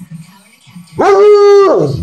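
A bloodhound gives one loud howling bark about a second in, held at a steady pitch for under a second, in protest at being told no.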